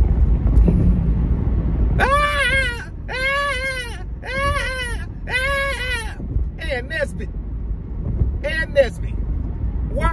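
A man singing four drawn-out high notes in a row, each rising and falling in pitch, then a couple of short vocal sounds near the end, over the steady low road rumble inside a moving car's cabin.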